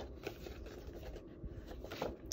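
Faint rustling and scraping of a folded cardstock card being handled and turned over by hand, with a few light ticks.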